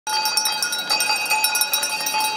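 Small brass hand bell shaken rapidly and ringing without a break, struck several times a second: the ceremonial first bell that opens the school year.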